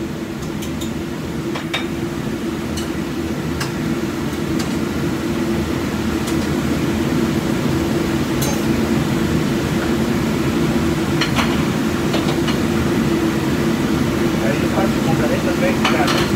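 Busy commercial kitchen: a steady low machine hum, with plates and utensils clinking now and then as a cook handles dishes on the line.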